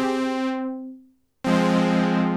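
Synthesizer pad chords played through a June-60 Juno-style analog chorus pedal, its internal trim pots set for a shallower modulation. One chord fades out about a second in, there is a moment of silence, and then a new chord starts abruptly.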